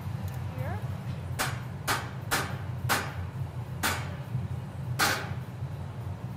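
Six sharp metallic taps, irregularly spaced over about four seconds, each with a short ring: the steel blowpipe being tapped to crack the blown glass bubble off at the jack line once it is held on the punty. A steady low hum runs underneath.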